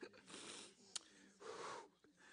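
Faint breathing of a person, two soft breaths, with a small click about a second in.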